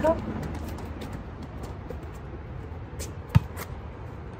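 A single sharp smack of a volleyball about three and a half seconds in, over quiet outdoor court background with a few faint ticks.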